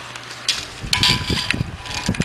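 Rustling and light scraping handling noises in a few short bursts, over a faint steady low hum.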